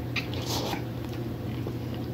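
Close-miked eating sounds: a bite into a soft piece of food, with a couple of small clicks and then a short wet mouth noise about half a second in, over a steady low hum.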